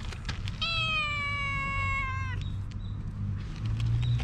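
Calico cat meowing once: a single long meow of under two seconds, starting about half a second in, its pitch sinking slightly toward the end.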